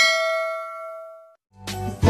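Notification-bell 'ding' sound effect of a subscribe-button animation: one struck chime that rings with a few overtones and fades out over about a second and a half. Near the end, music begins to fade in.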